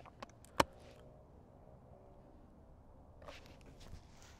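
Quiet open-air ambience with a single sharp click about half a second in and a faint soft rustle near the end.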